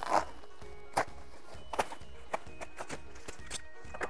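Plastic bubble wrap crinkling and crackling as it is handled and folded around a glass vessel, in a string of short, sharp crackles, over quiet background music.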